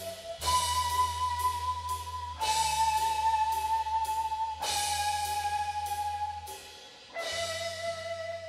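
Live rock band with electric guitar, bass and drums playing long held chords. Each new chord, about every two seconds, is struck together with a cymbal crash over a sustained bass note, as at the close of a song.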